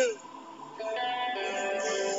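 Fighter's entrance music starting about a second in, with long held notes.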